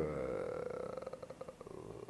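A man's drawn-out hesitation sound "euh", a held vowel that trails off and fades over about a second and a half.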